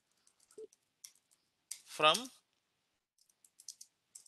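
Computer keyboard being typed on: a few faint, scattered key clicks, in two short runs with a gap between them.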